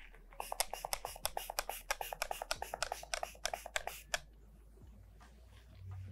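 Paper towel being handled and crumpled: a quick run of crisp crackles, about eight a second, that stops about four seconds in.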